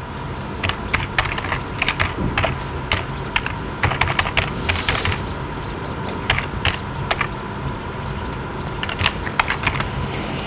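Computer keyboard being typed on in irregular bursts of keystrokes, thinning out past the middle, then a quick flurry near the end, over a steady faint hum.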